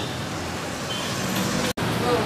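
Steady background noise of hum and hiss, with no speech, dropping out for an instant near the end where the recording is spliced.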